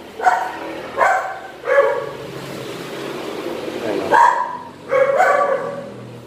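A dog barking: three short barks about two-thirds of a second apart in the first two seconds.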